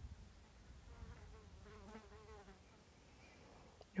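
A flying insect buzzing faintly near the microphone. About a second in, its hum wavers in pitch for a second and a half, then fades. A low rumble runs underneath.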